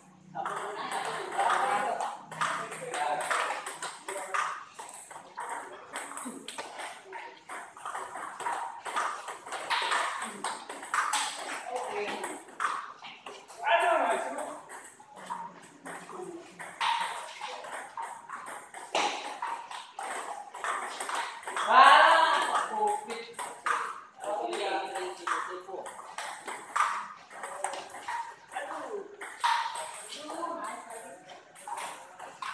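Table tennis balls clicking off paddles and table tops in quick, uneven runs of rallies at several tables at once.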